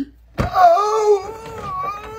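A person's long, loud, wailing cry of acted pain: one drawn-out note that starts about half a second in with a short thump and holds roughly steady in pitch. It is dinosaur-like.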